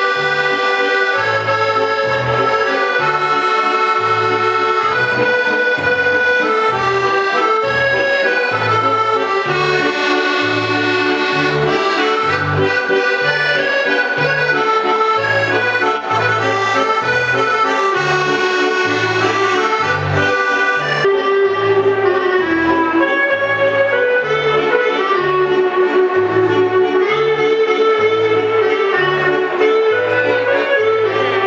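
Piano accordion playing a tune: a melody of held and moving notes over steady, evenly repeated bass notes.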